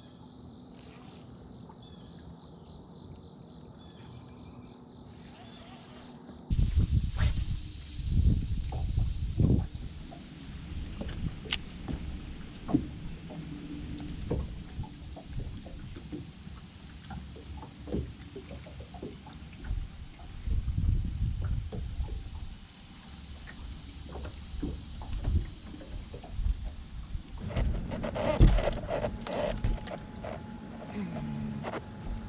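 Steady high trilling of insects for the first six seconds, then an abrupt change to wind buffeting the microphone: an uneven, gusting rumble with scattered small knocks and ticks.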